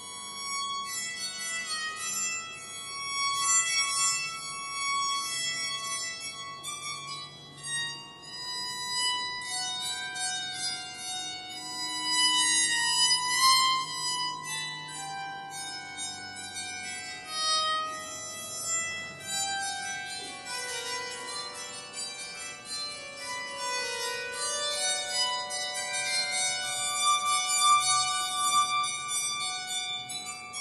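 Bowed psaltery played solo: a melody of held, bowed notes following one another, each note ringing with bright overtones.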